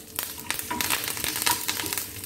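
Fresh curry leaves frying in hot coconut oil with mustard seeds and urad dal for a South Indian tempering: a steady sizzle dotted with many small crackles.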